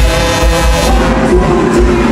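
Loud live band music in the Isan toei style, with electric guitars over a steady heavy bass beat.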